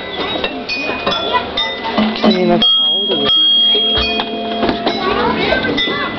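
Metal pipe chimes on a playground chime panel struck several times by their hanging ball strikers, each tube ringing with a clear tone. The loudest, a high note a little under three seconds in, rings on for about two seconds.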